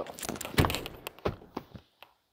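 Folding rear seatback of a Jeep Grand Cherokee swung up from flat and latched upright: a run of knocks and clicks, the loudest thunk about half a second in.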